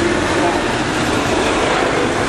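Steady, loud road-traffic noise from vehicles passing close by, with faint voices under it.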